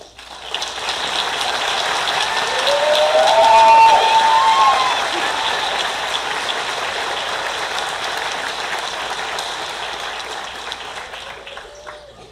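Audience applauding with a few cheering voices. It swells quickly, is loudest a few seconds in, then slowly dies away.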